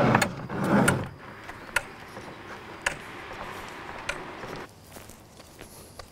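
Handling noise of a plastic bucket and bags being lifted out of a pickup truck bed: a rustling scrape for about the first second, then a few light clicks and knocks over faint outdoor background.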